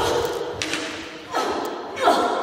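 Thuds from a staged fight with training gladius swords: sharp hits and footfalls at the start, about halfway through and at the end, each trailing off in a long echo off bare walls.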